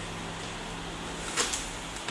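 Plastic battery release latch on a Lenovo G580 laptop's underside being slid, with one faint click about one and a half seconds in, over a steady low hum.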